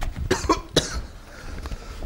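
A man coughing: a few short, harsh coughs in the first second, then quieter. He is coughing in the gas given off by the hydrochloric acid and aluminium reaction.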